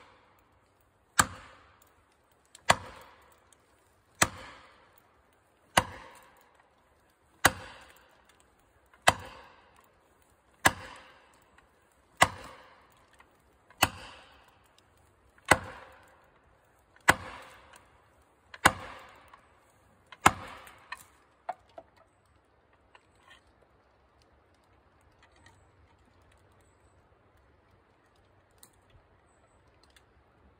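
Axe poll driving a blue plastic felling wedge into the back cut of a standing tree: about thirteen evenly spaced blows roughly a second and a half apart, each ringing briefly. The wedge is being driven to lift the tree over against its lean. The blows stop about twenty seconds in, followed by a few lighter knocks.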